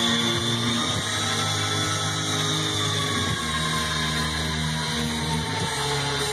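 Rock band's sustained distorted guitar and bass notes, held and restarted, with a high guitar tone sliding slowly down in pitch.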